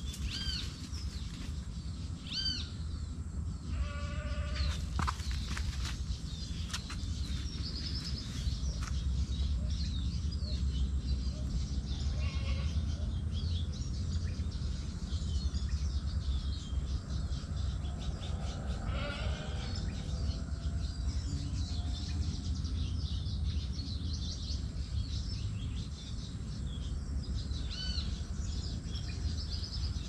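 Outdoor ambience: short high calls repeating every few seconds, typical of birds, over a steady low rumble. A couple of longer animal calls with a bleat-like quality come about four seconds in and again around twenty seconds in.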